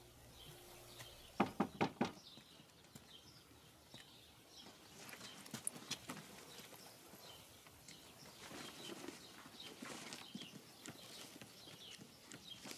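Four quick knocks on a wooden door, followed by faint scattered taps and clicks against quiet outdoor ambience.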